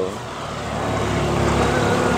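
A motor vehicle's engine going by on a nearby road, a steady hum that grows gradually louder as it approaches.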